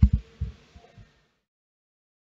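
A few soft, dull low thumps in the first second, then silence.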